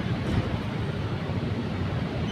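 Steady low rumble of busy street traffic, with no distinct events.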